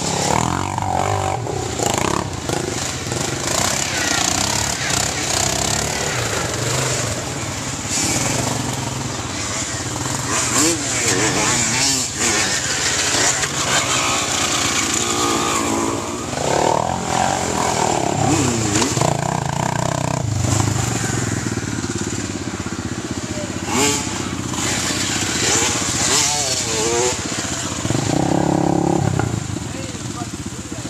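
Quad (ATV) engines revving up and dropping back again and again as the quads ride the trail, the pitch wavering up and down throughout.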